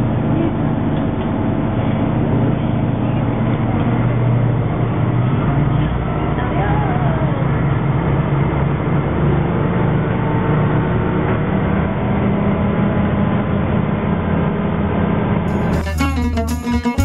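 Steady low drone of a train heard from inside the carriage, its deep rumble growing louder from about five seconds in as the train pulls away from the platform.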